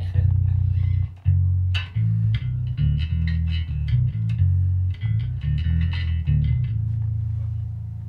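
Electric bass played through a CEX octaver pedal and Markbass amp, with a deep octave-down tone. One held note is followed by a run of shorter low notes, and then a long note that fades near the end.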